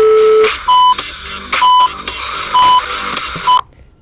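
Electronic countdown beeps over background electronic music: one longer, lower tone at the start, then four short, higher beeps about one a second, timing the count to pressing the Power and Home buttons. The sound cuts off abruptly near the end.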